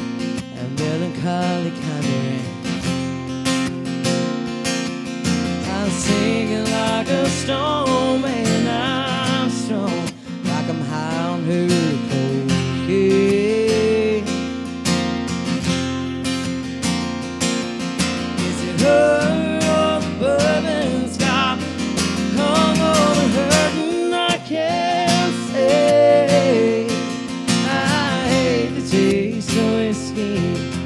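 Acoustic guitar strummed steadily under a woman singing a country song, her voice gliding over the chords.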